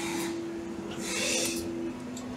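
CNC machine tool running with a steady whine that gives way to a slightly lower steady whine toward the end, with two short hisses.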